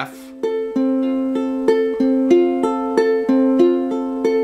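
Oscar Schmidt OU6 tenor ukulele fingerpicked in a steady four-four arpeggio on an F chord. The thumb alternates between the fourth and third strings, then the index finger plucks the second string and the middle finger the first, at about three notes a second. The notes begin just after a short pause at the chord change.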